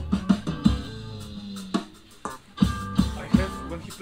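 A recorded instrumental band track with drum kit, bass and guitar, played back through studio monitor speakers. Drum hits land over held guitar and bass notes, and the music thins out briefly about halfway through.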